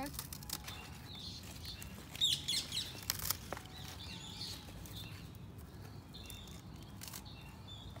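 Birds chirping around a garden bed while pruning shears snip through Swiss chard stalks among rustling leaves. There is a quick run of high chirps about two seconds in and a sharp click about three seconds in.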